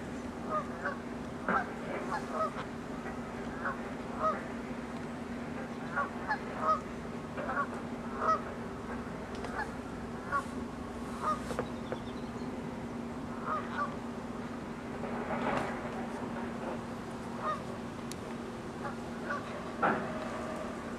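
Geese honking, many short calls scattered throughout, over a steady low hum.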